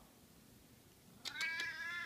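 Siamese cat meowing: one long, high-pitched meow that starts a little past halfway and carries on to the end.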